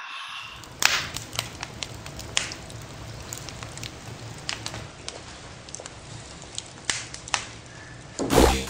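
Wood fire crackling in a fireplace: a steady hiss broken by sharp pops every second or so, the loudest about a second in.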